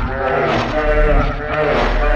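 Children's cartoon song distorted into a horror version: the singing voices warble up and down in pitch over the backing music, giving a bleating, unsettling sound.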